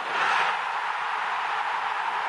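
Stadium crowd cheering a goal: a dense wall of cheering that swells up suddenly at the start and holds steady.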